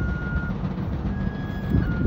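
A slow tune on a high wind instrument: long held notes that step from one pitch to the next, with brief quick flicks between notes, over a steady low rumble.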